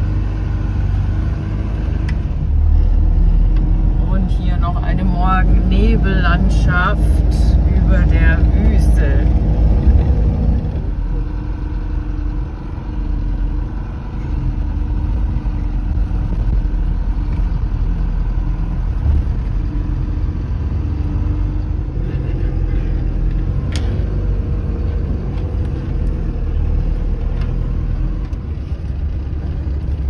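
Diesel engine of a Mercedes-Benz Vario 818 truck droning steadily under way on a sandy desert track. It is louder for the first ten seconds or so and eases off slightly after about eleven seconds.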